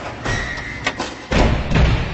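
Cinematic logo-reveal sound design: a run of deep thuds and impacts, with a brief high tone early on. The heaviest low impact lands about a second and a half in.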